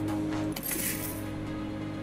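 Fruity Gold online slot game sounds: sustained electronic tones, with a bright, jingling coin-like chime about half a second in as the win is shown and the next spin begins.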